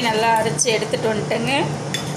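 A woman speaking Tamil in a steady run of narration.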